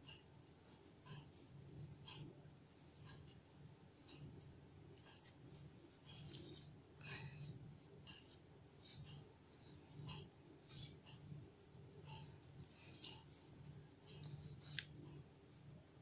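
Near silence: faint soft ticks and rustles of a crochet hook working yarn, over a steady faint high-pitched tone.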